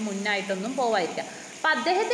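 A person speaking in a lecture, with a short pause about a second and a half in and a steady hiss underneath.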